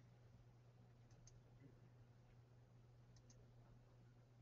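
Near silence: room tone with a steady low hum and two faint pairs of clicks, about a second in and about three seconds in.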